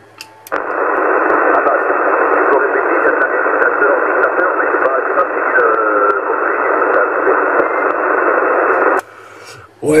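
CB transceiver receiving another station on 27 MHz single sideband: its speaker gives a loud band of static hiss with a faint, barely intelligible voice buried in it. The hiss starts about half a second in and cuts off suddenly near the end, when the other station stops transmitting.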